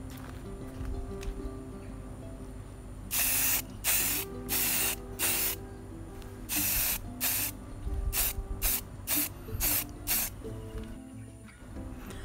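Aerosol spray can of paint spraying in a run of short bursts, about a dozen, beginning about three seconds in. The early bursts last around half a second and the later ones are briefer. The spray comes out strongly.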